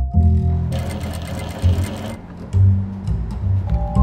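Industrial sewing machine stitching lace, running in short bursts: one starting about a second in and another near the end. Background music with a plucked bass line plays throughout and is the loudest sound.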